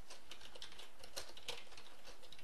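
Computer keyboard typing: a quick, uneven run of light key clicks.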